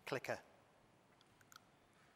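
A man's voice in one short utterance right at the start, then a few faint clicks in a quiet, reverberant hall.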